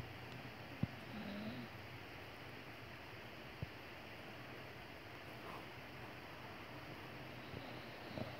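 Faint breathing of a dog drifting off to sleep, with a short, soft wavering nasal sound about a second in and two small clicks.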